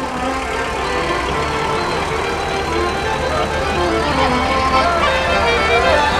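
A slow-moving Volkswagen truck's engine running with a steady low hum, under live folk music with melodic lines played throughout.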